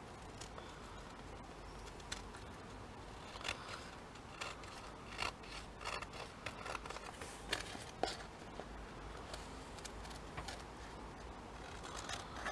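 Small scissors snipping along the edge of thin paper glued to an envelope flap, trimming off the excess in a run of short, faint, irregularly spaced cuts.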